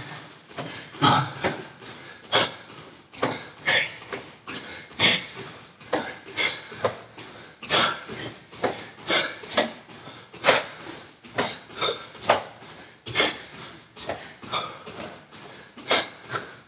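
Barefoot feet landing on foam floor mats during jumping jacks, with the slap of the moving gi: a steady run of sharp thuds, about one or two a second.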